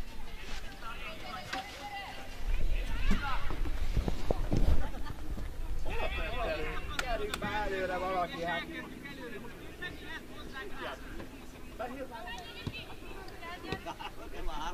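Voices of players and spectators calling out across an open football pitch, unclear words shouted from a distance. A low rumble comes in a few seconds in.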